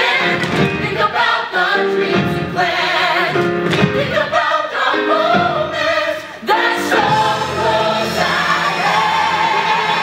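Large mixed chorus of musical-theatre voices singing together with instrumental accompaniment. The singers move through a run of changing notes into a long held chord sung with vibrato near the end.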